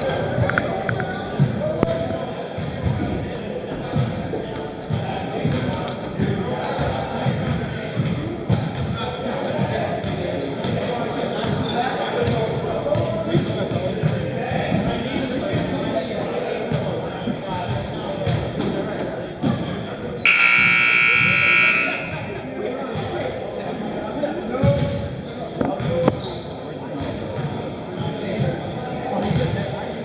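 Basketball gym during a timeout: players and spectators talking, with a basketball bouncing on the hardwood court. About twenty seconds in, a scoreboard buzzer sounds for nearly two seconds, the signal ending the timeout.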